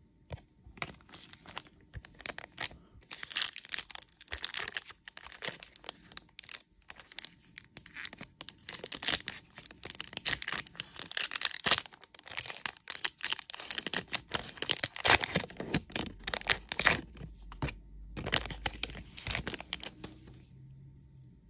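Foil wrapper of a Topps Chrome trading-card pack being torn open and crinkled: a long run of sharp, irregular crackles with short pauses.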